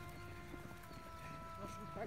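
Faint footfalls of runners passing on a grass path, soft irregular thuds, with faint steady tones underneath.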